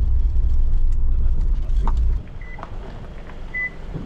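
A car's low engine rumble that cuts off abruptly about two seconds in, with a click just before it. Two short, high electronic beeps follow.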